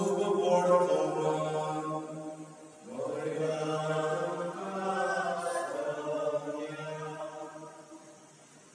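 A priest chanting a liturgical prayer in a man's voice, holding long notes on a steady reciting pitch, with a short break about three seconds in and fading near the end.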